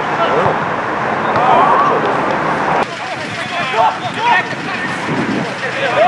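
Footballers' shouts and calls across an outdoor pitch, short scattered voices over a steady background haze of open-air noise. The background drops suddenly about three seconds in at an edit, after which more shouts follow.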